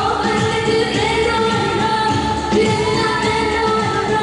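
Live pop song played through a PA: a singer holds long, wavering notes over loud amplified backing music, picked up from among the audience.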